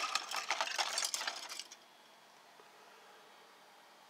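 Hard plastic model-kit parts trees clattering and clicking against each other as they are handled, a quick run of light clicks that stops about two seconds in.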